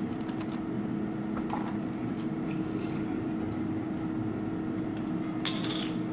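Boiled baby potatoes squashed flat one after another with a glass tumbler on a parchment-lined baking tray, soft squishes and light taps of glass on the tray, over a steady low hum. A short hissing rasp comes near the end.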